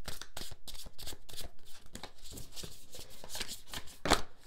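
A tarot deck being shuffled by hand: a quick, uneven run of soft card clicks and flicks as the cards slide against each other.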